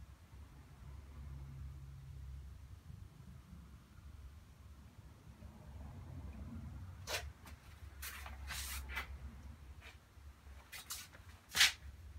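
Low steady room hum, then from about seven seconds in an irregular run of about ten short swishes and scrapes from a watercolour brush being worked, the loudest just before the end.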